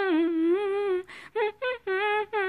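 A woman humming a melody without words and without accompaniment: a long note that dips in pitch, a quick breath about a second in, then a run of short notes.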